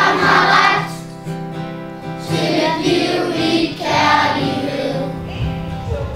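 A group of children singing together in sung phrases with short breaks, over a steady instrumental accompaniment.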